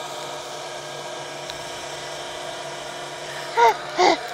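A steady motor hum with a faint whine above it, unchanging throughout; a person's voice cuts in briefly near the end.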